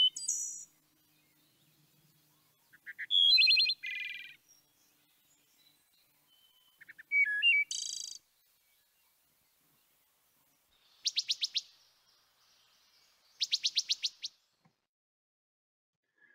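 Recording of a wood thrush singing: flute-like phrases about four seconds apart, each finishing in a higher trill, then two short bursts of rapid repeated high notes in the last third.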